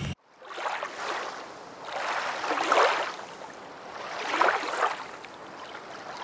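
Water washing in a rushing noise that swells and fades three times, about two seconds apart, starting after a brief gap.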